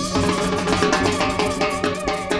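Live guaracha band playing an instrumental passage, with drums and percussion keeping a quick steady beat under melodic lines.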